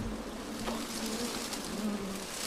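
A colony of wild honeybees massed on an open comb, buzzing steadily in a low hum while smoke is blown over them.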